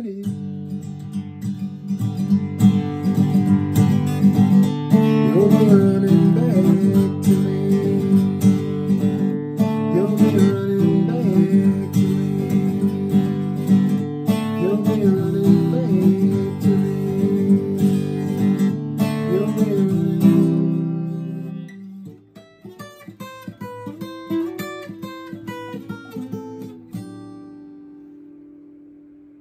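Acoustic guitar strummed in full chords. About 22 seconds in it drops to a softer pattern of single picked notes, which fades out near the end.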